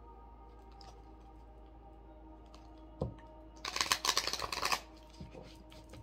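A deck of tarot cards being shuffled: a light tap, then about a second of rapid card clicking a little past halfway, followed by another soft tap.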